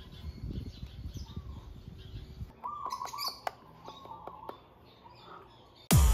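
Birds chirping outdoors over a low rumble for the first two and a half seconds. After that come short chirping calls and a few sharp clicks.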